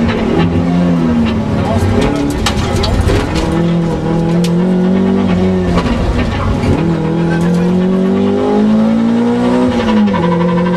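Toyota Corolla AE86 rally car's four-cylinder engine, heard from inside the cabin, revving hard under full throttle, its pitch climbing and then dropping back at each gear change. Sharp ticks and knocks sound over it, mostly in the first half.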